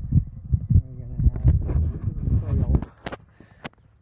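Low rumbling wind and handling noise on a handheld camera's microphone while walking, with irregular knocks, dropping away about three seconds in. Two sharp clicks follow near the end.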